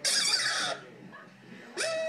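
Husky puppy giving a short, rough yelp, then near the end starting a steady, high-pitched howl.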